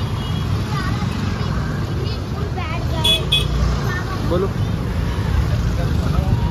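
Busy market-street traffic: motorcycle and scooter engines make a steady low rumble under the scattered voices of passers-by. Two short high beeps sound about three seconds in.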